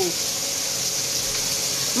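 Boneless chicken thighs sizzling steadily in oil in a nonstick skillet on a gas burner.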